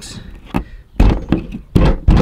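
Scissors cutting through a skinned bullfrog's leg joints: a few short, sharp snaps and thunks, the two loudest about a second in and near the end.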